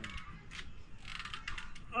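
Spring-loaded hand gripper creaking and clicking in irregular strokes as it is squeezed over and over.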